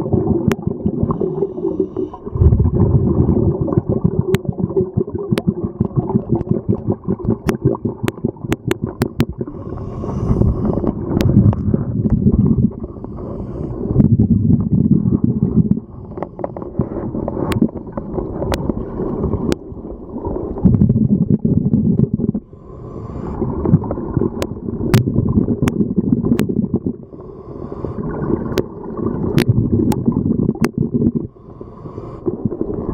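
Scuba regulator breathing underwater: a low bubbling rumble of exhaled air comes in surges of two to three seconds every few seconds, with quieter hissing in between. Scattered sharp clicks run through it.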